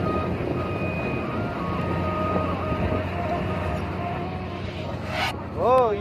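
Steady engine and road noise inside the cab of a Hino truck driving on a mountain road, with a faint melody running over it. About five seconds in, the noise cuts off abruptly and a singing voice with music begins.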